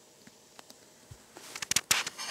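Handling noise from toys being moved close to the microphone: quiet at first, then a quick run of sharp clicks and crackles in the last half second.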